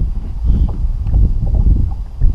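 Wind buffeting the microphone: a loud, irregular low rumble with nothing clear above it.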